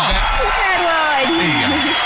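Excited voices cheering and whooping in falling glides over a wash of applause, celebrating a correct answer.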